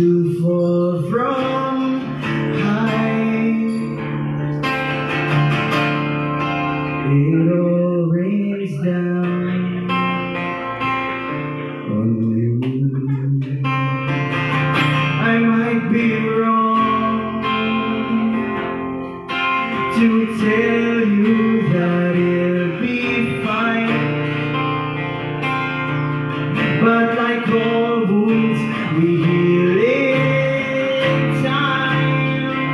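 Live acoustic guitar strummed steadily, with a man singing over it through the PA.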